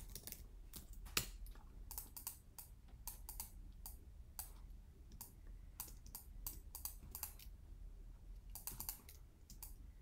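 Computer keyboard typing and mouse clicks: scattered, irregular light taps.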